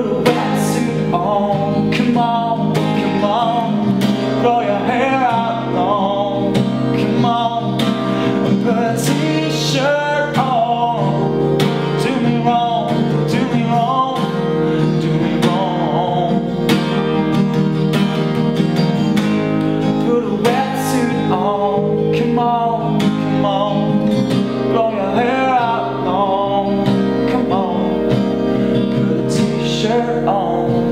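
Music: a man singing over a strummed acoustic guitar, with held organ chords underneath.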